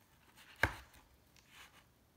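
A thick cardboard page of a board book being turned: a soft rustle, then one sharp thump a little over half a second in as the page comes down, and a fainter rustle near the end.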